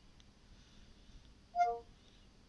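A short two-note falling chime from the Cortana app on an Android phone's speaker, about one and a half seconds in, as the app takes the spoken question and starts working on its answer. Otherwise faint room tone.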